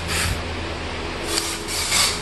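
Compressed-air spray gun spraying cavity (inner) wax into the underbody and suspension, in two hissing bursts: a short one at the start and a longer one about a second and a half in.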